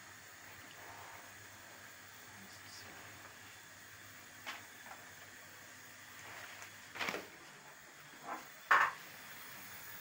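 A few short knocks and clatters of a pan and kitchen things being handled, over quiet room tone; the sharpest knock comes near the end.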